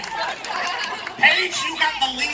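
People talking: voices and chatter from performers and the crowd, with no other distinct sound.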